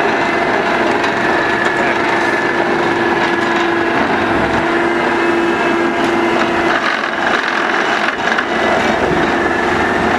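Hydrema MX14 mobile excavator running with a steady hydraulic whine while an Engcon tiltrotator-mounted plate compactor works through wood mulch. The whine fades about seven seconds in and comes back near the end.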